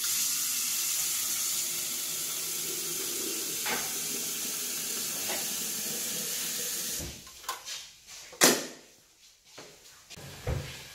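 Kitchen tap running into a glass kettle, filling it, for about seven seconds; the water then shuts off and a few knocks follow, one sharp and loud about a second and a half later, as the glass kettle is handled.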